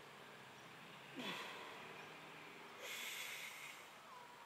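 A lifter's strained grunt, falling in pitch, about a second in as he drives a 130 kg barbell up out of the bottom of a low-bar back squat, then a hard, noisy breath near the end as he reaches the top.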